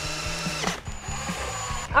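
Cordless drill driving 1¼-inch pocket-hole screws into a pine face-frame joint. It runs in two spells with a brief dip about two-thirds of a second in, and its motor whine cuts off just before the end.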